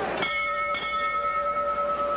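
Boxing ring bell struck twice in quick succession, about half a second apart, its metallic ring holding and fading slowly. It signals the ring announcer's announcement of the result.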